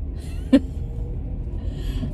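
Low, steady rumble inside a car cabin. A short voiced sound comes about half a second in, and a breath is drawn near the end.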